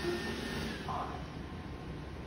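Roborock E4 robot vacuum running on a tile floor, a steady whir from its motors and brushes that drops a little about a second in. It has just been told to stop cleaning and is heading back to its dock.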